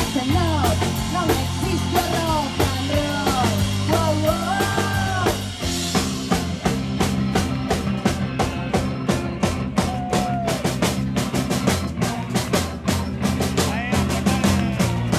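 Live rock band playing loudly: drum kit, bass, electric guitar and keyboard. A bending lead melody sits on top for the first half, then the drums take over with a fast, even beat over held bass notes.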